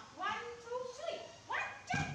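Baby monkey giving a string of high, squeaky cries that bend up and down in pitch, the last one near the end sweeping sharply upward.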